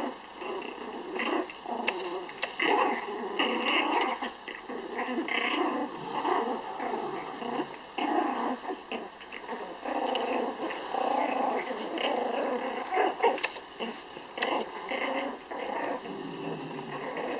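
Pomeranian puppies growling in play as they tug at toys, in short, irregular bursts that overlap.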